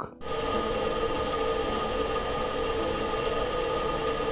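Steady hum of the heat pump inside the Perseverance rover, picked up by the rover's microphone in a test recording during the cruise to Mars. It is a constant hiss with a few steady tones and starts about a quarter second in. The recording shows that the microphone works.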